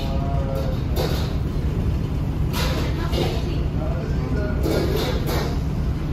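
Restaurant room sound: a steady low hum with indistinct voices and faint background music.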